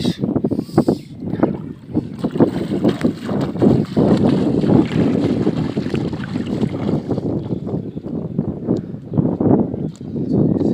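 Water splashing and sloshing around legs wading through a shallow river, with wind buffeting the microphone in uneven gusts.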